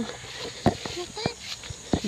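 Footsteps on a rocky dirt path: a few scuffing thuds, the loudest about two-thirds of a second in and again near the end.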